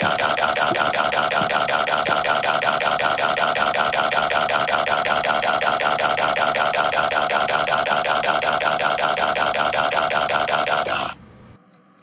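A text-to-speech voice reading out a long string of the letter 'a' as a scream. It comes out as a rapid, even, machine-like stutter of the same syllable and cuts off suddenly about eleven seconds in.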